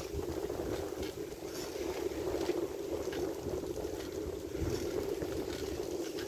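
Wind buffeting the microphone of a handlebar-mounted camera while a bicycle rolls along a concrete road: a steady, even hum with an irregular low rumble underneath.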